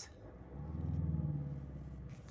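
Engine of a 2011 VW Jetta pulling as the car gathers speed: the engine note rises and swells about a second in, then eases off.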